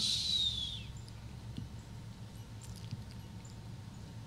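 A brief high whistle-like squeak falling in pitch in the first second, then a low steady electrical hum from the sound system with a few faint clicks.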